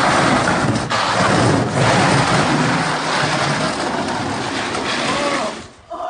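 A refrigerator being pushed along asphalt on its back, scraping and rumbling continuously under the load of a person riding on it. The scraping stops shortly before the end.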